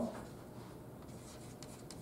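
Faint chalk writing on a blackboard, with a few light ticks of the chalk near the end.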